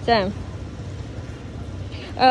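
A brief spoken syllable at the start, then a steady low rumble with a light hiss underneath, like a motor running.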